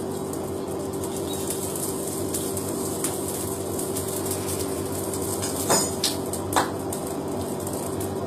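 Metal struck against metal: three sharp clinks within about a second, two-thirds of the way through, the first one ringing, over a steady machine-like hum.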